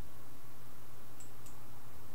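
Room tone: a steady hiss with a low hum. Two faint short clicks come a third of a second apart just past the middle.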